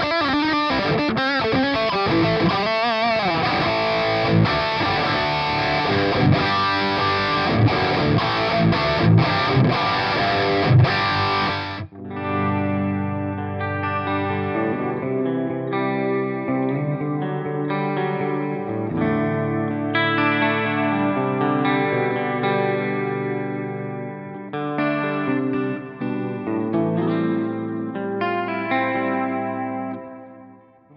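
Suhr Classic electric guitar played through a Kemper preamp and a Soldano 4x12 Celestion Vintage 30 cabinet impulse response. Dense, bright distorted playing gives way suddenly, about twelve seconds in, to a darker tone with longer held notes as a different cabinet IR mix is heard.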